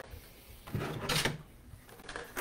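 Brief scraping and rustling, starting a little under a second in, as things are handled on a work table to clear away pruned plant clippings.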